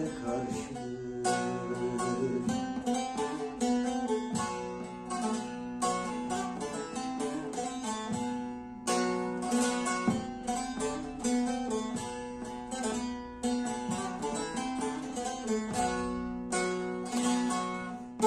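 Long-necked bağlama (saz) played solo: a quick, continuous run of plucked notes over a steady drone from the open strings, an instrumental passage with no singing.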